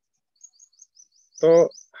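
A bird chirping faintly in the background: a quick run of short, high chirps. A voice speaks one word near the end, louder than the chirps.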